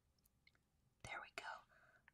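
Near silence, with a brief faint whispered mutter about a second in.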